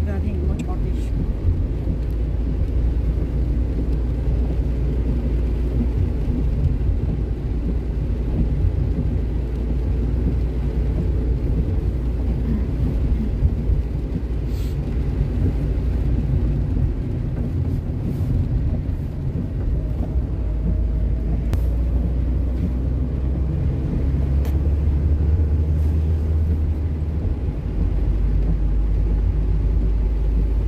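Steady low rumble of a car driving on a wet road, heard from inside the cabin.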